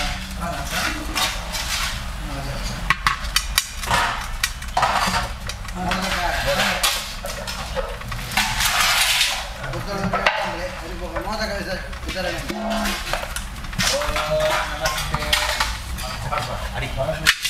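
Steel pots, plates and ladles clinking and clattering around a homa fire pit, with people's voices. About halfway through a dense hiss rises for a second or so as an offering is poured into the fire and the flames flare up.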